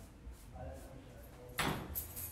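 A wooden vanity drawer sliding and knocking: one short scrape-and-knock about one and a half seconds in.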